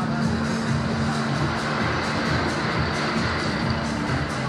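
Loud fairground music from the rides and stalls, with a steady beat and a steady low hum held underneath it.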